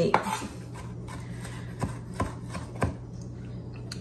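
Chef's knife chopping maraschino cherries on a wooden cutting board: a few separate, irregularly spaced knife strikes against the board.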